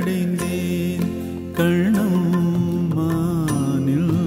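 Music from a Tamil film song: a melodic passage between sung lines, played over a steady low drone.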